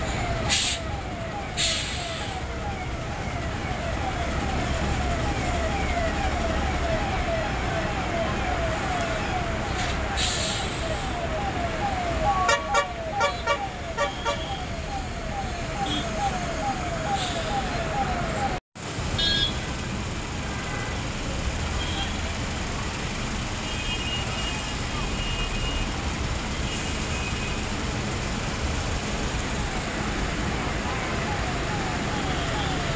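A fire engine siren in a fast yelp, sweeping up and down about three times a second over steady traffic noise, with a short burst of horn blasts about twelve seconds in. After a brief cut, the siren is gone and a steady background of traffic and fire-scene noise remains.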